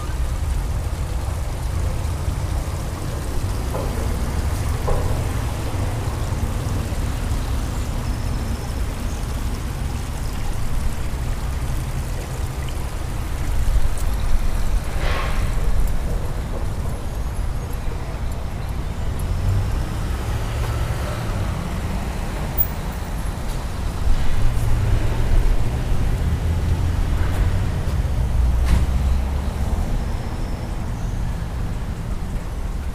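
Steady low outdoor rumble, louder for a few seconds near the middle and again toward the end, with one brief higher sound near the middle.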